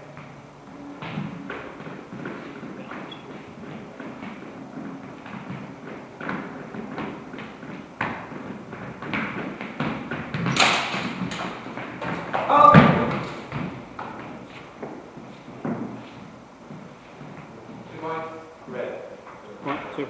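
A longsword fencing bout: footsteps and shuffling on a hard floor with scattered knocks, a sharp clash of blades about ten seconds in and the loudest hit near thirteen seconds, in an echoing hall. Voices come back in near the end.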